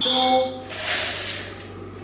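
A handful of kidney beans dropped into a bowl: a brief rattling clatter of beans landing and settling, about a second in, after a short spoken word at the start.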